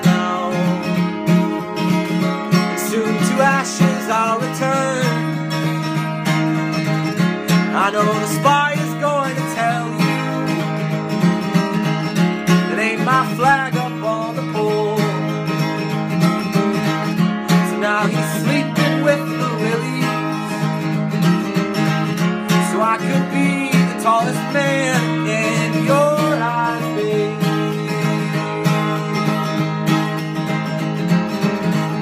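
Steel-string acoustic guitar with a capo, strummed and picked steadily, with a man's singing voice coming in at moments over it.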